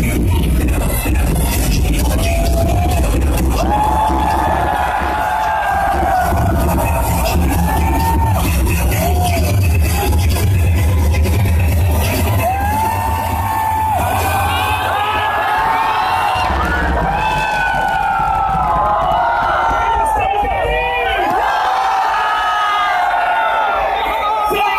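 Electronic dance music from a live DJ set over a stadium sound system, with a heavy bass beat that drops out about two-thirds of the way through. A crowd shouts and whoops over it, more densely once the bass is gone.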